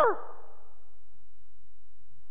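A pause in a man's preaching: his last shouted word cuts off at the very start and rings briefly in the room's echo, then only a faint, steady low hum remains.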